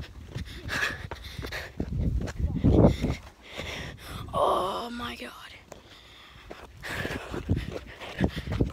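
Hushed, indistinct voices and whispering, over crunching and rustling from someone walking across loose dirt and rock with a handheld phone.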